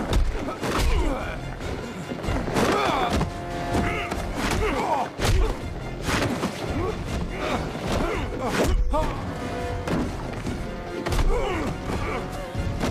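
Fight-scene sound effects: a series of punches and body thuds with grunts of effort, over tense background music.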